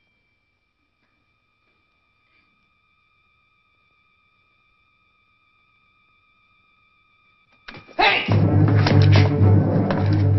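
Near silence with a faint, high, slightly wavering tone. Near the end a sudden thump, and loud, dramatic film-score music with heavy low notes crashes in.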